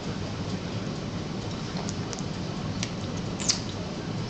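A four-month-old baby smacking her lips as she is spoon-fed baby food: a few small wet clicks, the loudest about three and a half seconds in, over a steady low hum.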